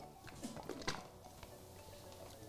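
Faint background music, with a few soft sips and slurps through a wide boba straw about half a second to a second in.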